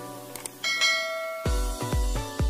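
Notification-bell chime sound effect from a subscribe-button animation: two faint clicks, then a bright bell ding that rings for under a second. Soft background music fades under it, and an electronic dance beat with heavy bass kicks comes in near the end.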